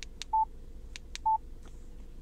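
Key beeps from a Yaesu FTM-100DR mobile radio's front panel as its buttons are pressed to edit an APRS text message. There are two short, high beeps about a second apart, each just after a sharp button click.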